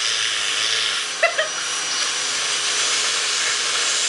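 Vacuum cleaner running, air hissing steadily through the plastic hose wand held against a person's lips.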